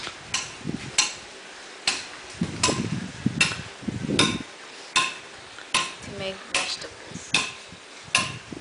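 A hammer striking metal at a steady pace, about one blow every 0.8 seconds, each with a short metallic ring.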